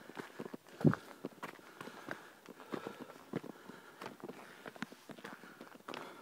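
Footsteps crunching and scuffing along a dirt woodland trail strewn with dry leaves, an irregular run of steps, with one louder thump about a second in.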